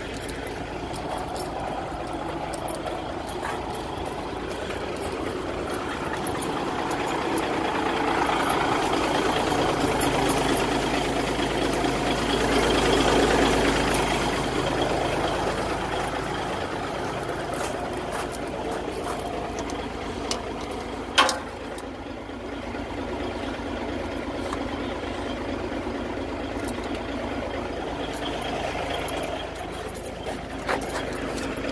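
Caterpillar 3406B inline-six diesel in a 1995 Freightliner FLD 120 idling after a start, its idle settling; the owner calls the engine bad. It grows louder for several seconds around the middle, then eases back. A single sharp knock sounds about two-thirds of the way in.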